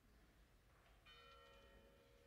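A single faint strike of an altar bell about a second in, its several tones ringing on and slowly fading, rung at the consecration of the bread.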